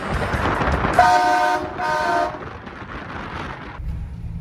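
A car horn honks twice: two short beeps about a second and two seconds in, over a rushing noise that cuts off just before the end.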